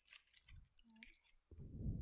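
Thin plastic blister packaging of gouache paint tubes crackling and clicking as tubes are pulled out of it, followed by a duller low thump near the end.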